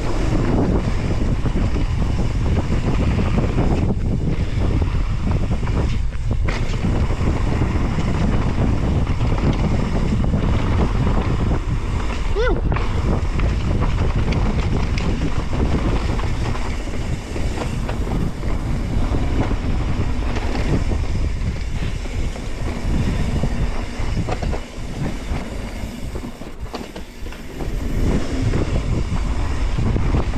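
Wind noise buffeting a helmet-mounted camera's microphone on a mountain-bike descent, mixed with tyres rolling over a dirt trail. It eases for several seconds past the middle, then comes back.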